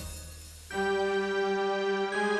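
Lowrey Legend Supreme electronic home organ playing. A chord dies away, then about two-thirds of a second in a new chord sounds and is held.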